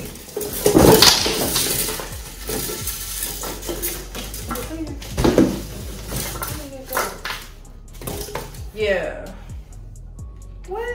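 Cardboard packaging rustling and scraping while a flat-pack glass coffee table is unpacked, with repeated knocks and clinks of its glass panels and foam pieces; the loudest rustle comes about a second in. Background music plays along.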